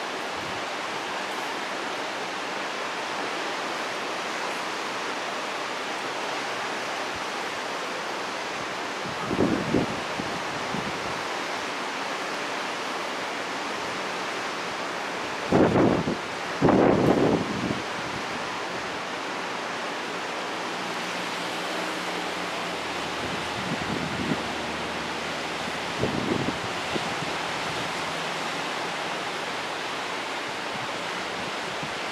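Steady wash of ocean surf and wind, with gusts of wind rumbling on the microphone several times, loudest about halfway through.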